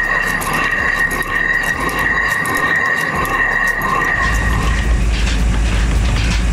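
Stone flour mill (chakki) grinding grain. A steady high whine over a grinding noise gives way, about four seconds in, to a heavy low rumble.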